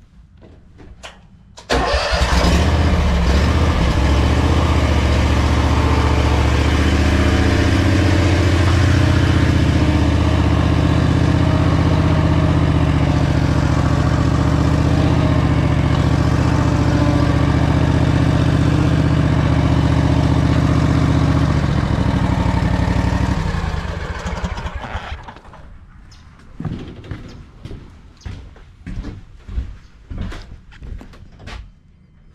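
Husqvarna mower's engine starting about two seconds in and running at a steady pitch for some twenty seconds while the mower is driven, then shut off and dying away, followed by a few light knocks.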